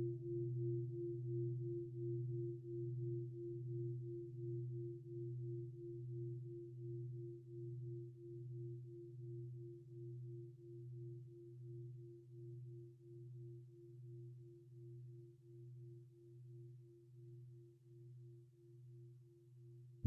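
A meditation gong of the singing-bowl kind rings out after a strike, sounding the close of a practice period. A low steady hum with a fainter higher tone above it pulses about twice a second and slowly fades away.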